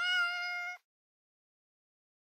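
A short, steady pitched sound effect with a single unwavering note, lasting under a second and cutting off abruptly into dead silence.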